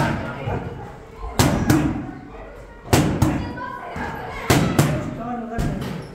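Gloved punches smacking into focus mitts, thrown as quick double strikes about a third of a second apart: three pairs about a second and a half apart, then a single strike near the end.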